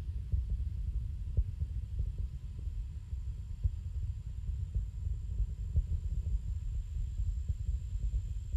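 Distant, low, irregular rumble with crackle from the Space Shuttle's ascent: its two solid rocket boosters and three main engines firing at full thrust.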